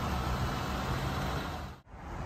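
A vehicle engine running steadily at idle, a low hum under outdoor background noise. The sound drops out briefly near the end.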